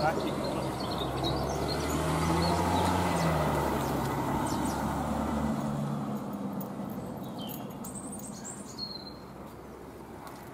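A motor vehicle's engine runs with a low hum that swells and then fades away over the first six seconds, as if passing or pulling away. Birds chirp faintly near the end.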